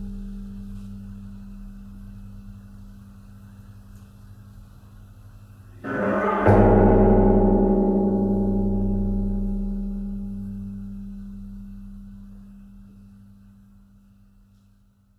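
Large metal cauldron ringing like a gong, a deep drone of several steady tones slowly fading. About six seconds in a louder swell comes in and sharpens into a hard hit, then the metal rings on and gradually dies away near the end.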